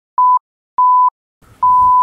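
Three steady electronic beeps of one high pitch, each longer than the one before, with dead silence between the first two: a bleep tone added in editing rather than a sound from the scene.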